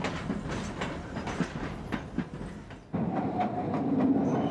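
A train running past on the track, its wheels clicking over the rail joints. About three seconds in, the sound cuts abruptly to a louder passage with a steady tone.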